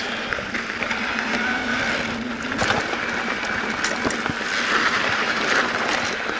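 Electric mountain bike rolling along a dirt trail: steady tyre and riding noise, broken by frequent clicks and rattles from the bike over the rough ground.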